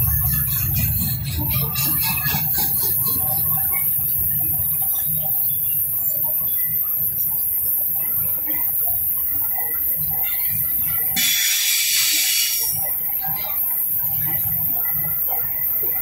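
Loaded eucalyptus log wagons of a freight train rolling past: a steady low rumble of steel wheels on the rails, with faint wheel squeals. A brief hiss comes in about eleven seconds in.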